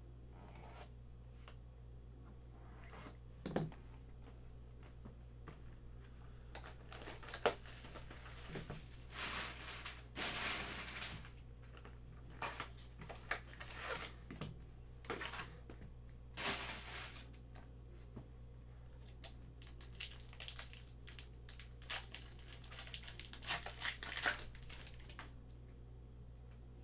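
Trading-card hobby box and its foil packs being opened by hand: irregular crinkling, rustling and tearing of plastic wrap and foil, with a few sharp snaps, over a steady low hum.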